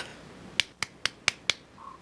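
Five quick, sharp clicks in a little over a second, like snaps or claps.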